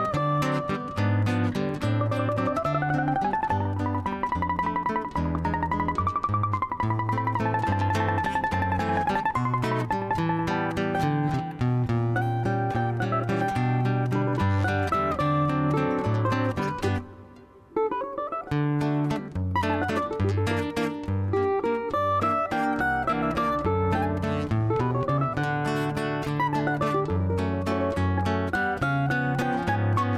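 Cavaquinho playing the melody of a choro waltz, with a nylon-string acoustic guitar accompanying it with bass runs and chords. The music thins to a brief pause about seventeen seconds in, then goes on.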